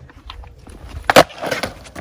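A wooden skateboard deck dropped onto a concrete driveway: one sharp, loud clack a little over a second in, with a few lighter knocks around it.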